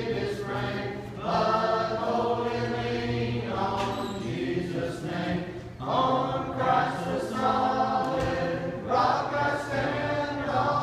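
A group of voices singing a hymn together, held notes in phrases of a few seconds each.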